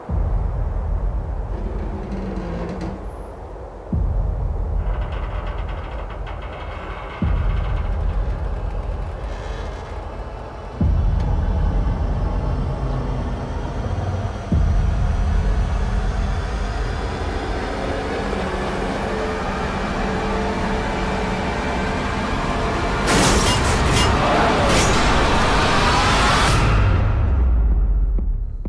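Dramatic trailer score: deep booming hits about every three and a half seconds over a sustained, rumbling low drone. It builds to a loud, rising swell in the last few seconds and then stops abruptly.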